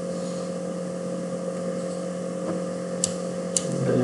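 Steady low hum throughout. Two short, sharp mouse clicks come about three seconds in, about half a second apart.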